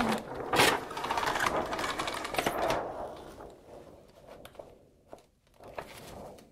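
Clear insulating roller blind being pulled down: a rapid mechanical rattle from the roller as the sheet unrolls, with a sharp knock near the start. It fades out about three seconds in, leaving a few faint clicks.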